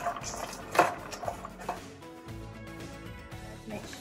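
A spatula scraping and knocking against a wok as caramel-coated almonds are stirred, with a sharp knock about a second in. Background music with held notes fills the second half.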